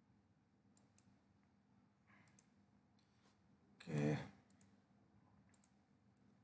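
Faint computer mouse clicks, a handful of scattered single and paired clicks over low room hum. One short spoken word comes about four seconds in.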